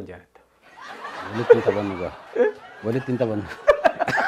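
Chuckling and laughter mixed with a few spoken words, starting about a second in, with a few sharp clicks shortly before the end.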